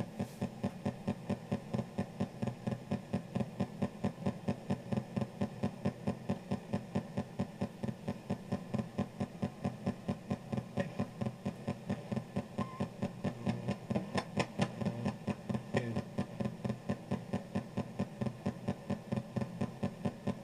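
Ghost box radio sweep played through a karaoke machine's speaker: choppy static and hum chopping on and off about four times a second as it scans through stations.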